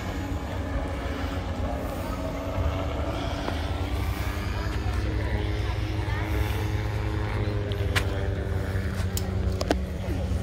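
An engine drones steadily and low, with faint voices in the background and a couple of sharp clicks near the end.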